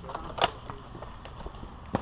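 Footsteps and gear-handling noise of a player climbing concrete stairs with a foam blaster, over a low rumble, with a brief rustle about half a second in and a sharp knock near the end.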